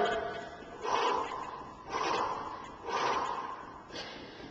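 A man breathing hard through his mouth while sprinting in place, with a loud exhale about once a second.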